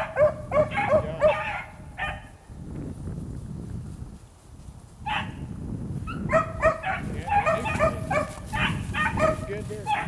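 Beagles baying on a rabbit's scent line, giving tongue after finding the track. A quick run of short, high bays, about three or four a second, stops about two seconds in, then the baying picks up again about five seconds in and keeps going.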